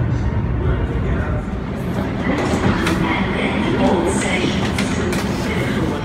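Suburban electric train running underground, a steady low rumble strongest in the first second and a half, with voices over it from about two seconds in.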